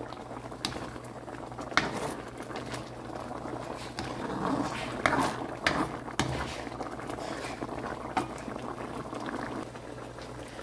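Cassava simmering in coconut milk in a pan, the thickened liquid bubbling steadily, with scattered sharp pops and clicks.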